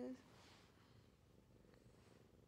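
Black kitten purring faintly, a low, steady rumble held close on a lap.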